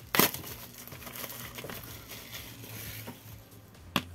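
Plastic shrink-wrap crinkling as it is peeled off a cardboard box by hand, with one loud crinkle just after the start, then quieter crackling.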